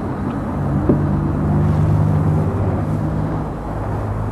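Car engine running, heard from inside the cabin as a steady low hum.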